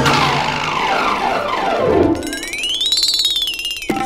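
Cartoon-style comedy sound effects. Several tones glide downward over the first two seconds, then a whistle-like tone rises and falls over fast rattling pulses and cuts off abruptly near the end.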